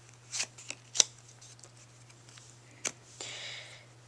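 Bicycle playing cards being handled: a few short card clicks in the first second, another near three seconds, then a brief sliding rustle of cards as they are turned over.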